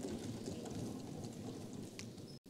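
Faint, dense applause from members in a large legislative chamber, a steady crackle of many hands clapping, as a speech ends.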